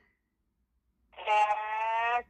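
Dead silence for about a second, then a woman's voice holding one steady, high note for about a second.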